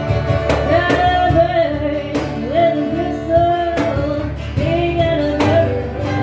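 Live acoustic blues band: a woman sings lead over strummed acoustic and electric guitars.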